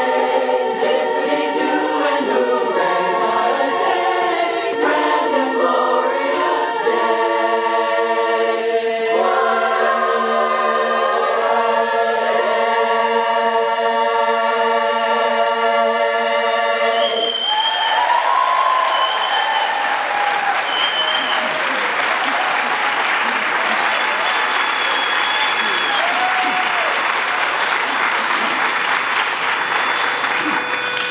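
Women's a cappella chorus singing the closing phrase of a song and holding a long final chord, which cuts off a little past halfway. The audience then breaks into applause, with whistles and cheers.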